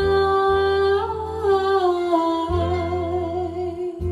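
A woman's voice holds one long, slow sung note that dips gently in pitch partway through, over soft accompaniment with sustained low bass notes that change about halfway through.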